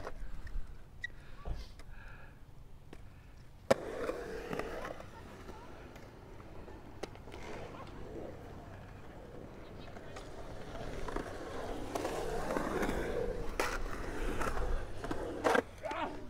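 Skateboard on a concrete bowl: a sharp clack about four seconds in as the board drops in, then the wheels rolling, the rumble swelling as the skater carves. There are a couple more clacks near the end.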